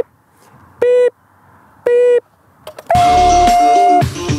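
Electronic countdown start beeps: two short beeps of the same pitch about a second apart, then a longer, higher-pitched beep that signals the start. Music begins under the final beep.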